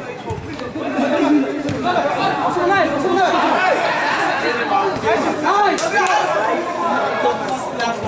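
Chatter of many overlapping voices from spectators talking and calling out in a large indoor sports arena.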